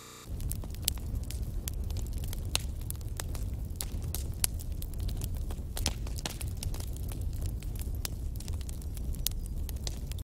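Crackling noise over a steady low rumble, with scattered sharp pops and crackles, starting suddenly just after the start.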